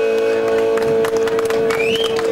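Live rock band with electric guitars: the lower parts drop away at the start, leaving one long steady note ringing on.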